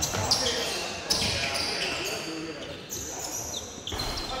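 Basketball game in a gym: a basketball bouncing on the hardwood court, with a few sharp thuds, and players' voices, all echoing in the large hall.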